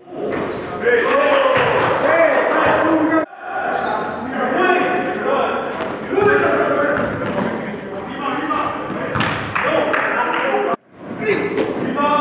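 Basketball game in a gym hall: indistinct voices, and a basketball bouncing on the court, echoing in the large room. The sound cuts out sharply twice, about three seconds in and near the end.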